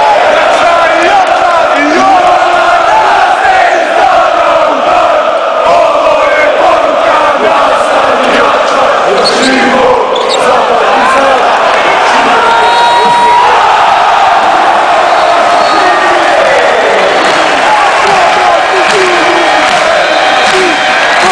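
Large home crowd of basketball supporters singing a chant together, loud and unbroken, with many voices wavering in pitch as they sing.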